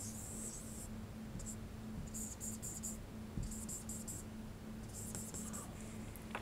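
Marker pen drawing on a whiteboard: several short bursts of scratchy strokes as small circles and squiggles are drawn.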